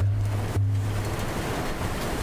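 A man's low hummed pause, steady and broken briefly about half a second in, over an even rushing noise on the microphone.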